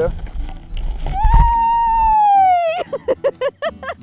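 A woman's long, high-pitched squeal of excitement, held for about a second and a half and falling in pitch at the end, followed by short bursts of laughter.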